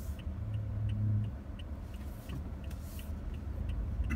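Low, steady engine and road rumble heard inside the cabin of a 2017 Toyota Corolla LE, with its 1.8-litre four-cylinder engine moving the car slowly. A hum swells briefly about half a second in. Faint, regular ticks come about three times a second throughout.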